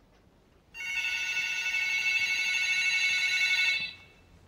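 Cordless phone ringing with an electronic tone, one ring lasting about three seconds and starting about a second in.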